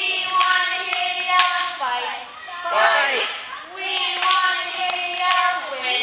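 Group of young girls chanting a cheer in unison, drawing out long words and ending each phrase with a short shout, with a few sharp claps in between. The phrase comes round about every three and a half seconds.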